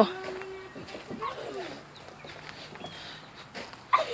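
Faint, scattered voice sounds with short wavering pitches, well below the level of nearby speech.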